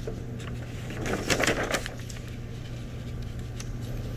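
Paper and fabric rustling and light handling noises as a transfer sheet is laid on a hoodie on a heat press platen and smoothed by hand, loudest about a second in, over a steady low hum.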